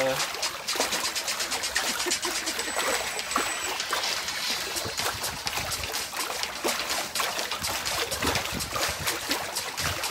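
Water splashing and sloshing in a shallow inflatable paddling pool as a person's legs open and close through it: a quick, irregular run of small splashes.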